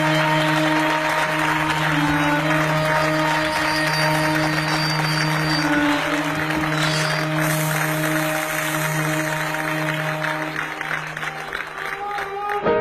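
An audience applauding in a theatre over background music of long held notes. The clapping dies away near the end.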